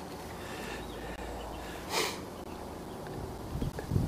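Low, steady rumble on a handheld phone microphone, with one short breathy hiss, like a sniff, about two seconds in.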